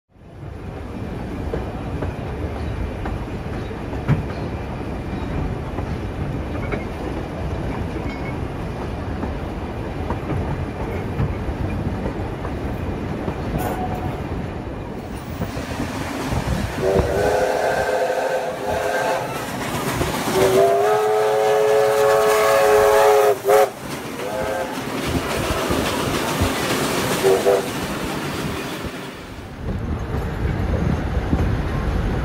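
Steam locomotive running past with a steady rumble of exhaust and steam, then sounding its whistle: a long blast, a longer one, and a few short toots near the end.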